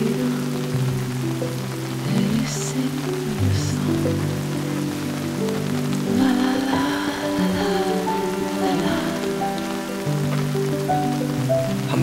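Steady heavy rain, with slow background music of long held notes changing pitch step by step beneath it.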